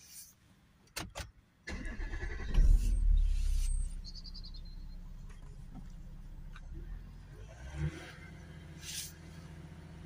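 Two clicks, then the Audi A4's 3.0 TDI V6 diesel engine is started: it cranks, catches with a brief flare of revs and settles into a steady idle.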